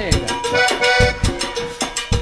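Live cumbia band playing: drums and percussion keep a steady beat under held melody notes.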